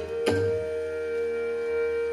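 Indian classical music: a bansuri flute holds one long steady note over a tanpura drone, with a single tabla stroke just after the start.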